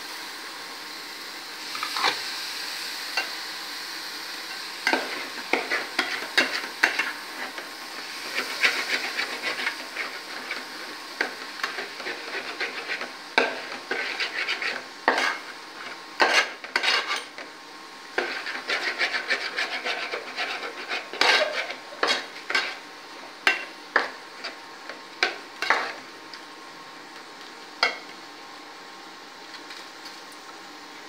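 Soaked jeera samba rice being scooped out of a steel bowl into a metal pot of masala: a spoon and hands scrape and clink irregularly against the bowl and pot rims, with stretches of grains rustling as they drop in and are stirred.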